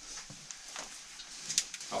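Faint scuffing, with a few short scrapes and knocks, as a caver squeezes through a tight gap between rocks.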